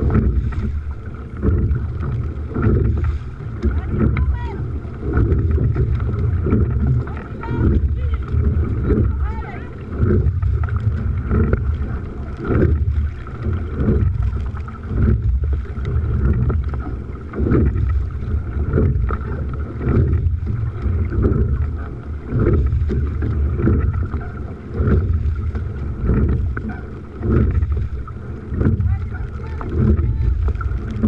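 A crew rowing a boat at a steady race rhythm: oars working in their oarlocks and blades striking the water in a regular pulse a little faster than once a second. Heavy wind rumble on the microphone runs underneath.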